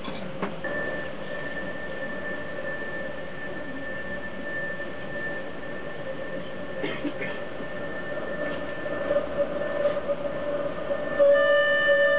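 Hurdy-gurdy drone, processed live: a steady held tone with a higher whistling tone above it over a rasping noise, with a few clicks. About a second before the end more tones come in and it gets louder.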